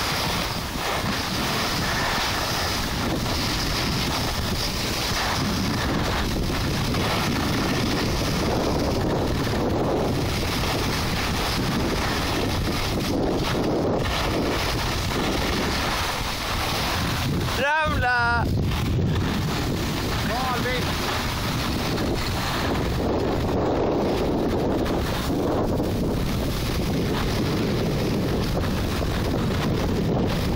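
Steady rush of wind on the microphone of a camera moving fast downhill, mixed with the hiss of sliding over snow. About eighteen seconds in, a brief voice call rises in pitch.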